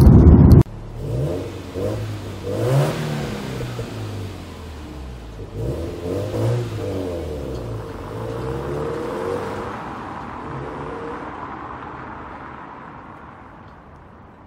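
A Subaru WRX STI's turbocharged EJ20 flat-four pulls away, revving up and easing off several times as it goes through the gears, and fades into the distance. It opens with a brief burst of loud engine noise from inside the cabin that cuts off abruptly.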